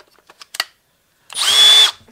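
Milwaukee M12 Fuel brushless hammer drill given a short no-load trigger pull in speed one (low gear): a high, steady motor whine lasting about half a second, starting past the middle. A few small clicks come before it as the drill is handled.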